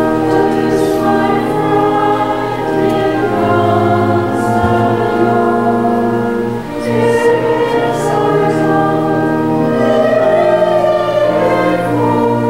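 Choir and congregation singing a hymn in Pennsylvania Dutch, many voices holding sustained notes, with organ accompaniment.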